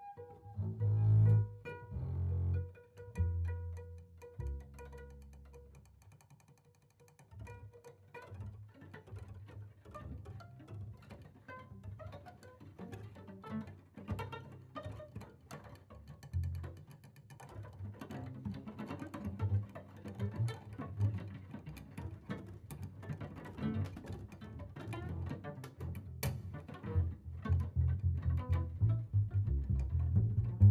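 Improvised jazz duo of double bass and cello, bowed and plucked: heavy low bass notes over a held higher tone in the first few seconds, a quieter stretch, then busy short plucked and scraped notes that grow denser and louder toward the end.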